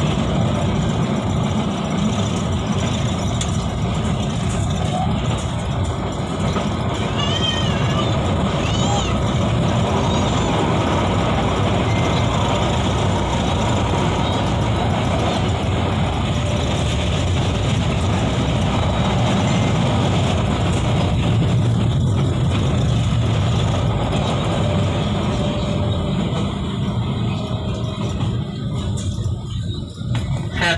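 Steady running noise inside a Manila LRT Line 1 light-rail car in motion between stations, with people talking in the carriage.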